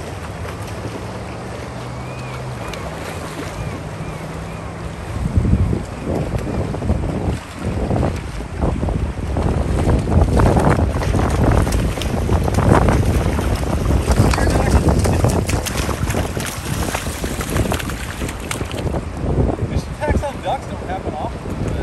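Wind buffeting the microphone over rushing river water, turning louder and gustier about five seconds in, with splashing as an angler wades and fights a hooked silver salmon in the shallows.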